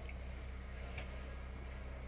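Quiet room tone: a steady low hum with a couple of faint ticks.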